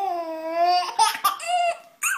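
Baby laughing: one long, high, drawn-out laugh, then two short laughs in the second half.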